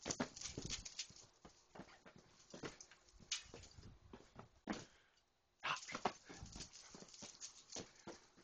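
A young basset hound growling in play during a game of chase, mixed with a quick clatter of scuffling steps and knocks. The sounds come in short bursts, with a brief lull about five seconds in before a louder run.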